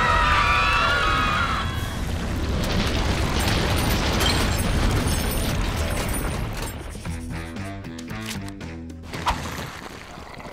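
Cartoon crowd screaming in panic for the first second or two, then a loud low rumble under dramatic music. About seven seconds in the rumble fades, leaving a short run of music notes and a sharp click.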